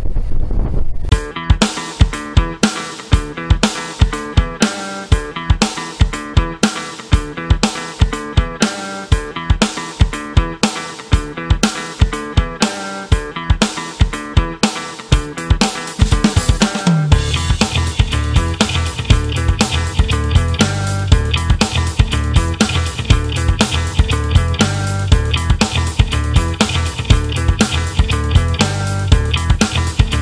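Background music: a rock track with a steady drum beat and guitar. A fuller bass part comes in a little past halfway.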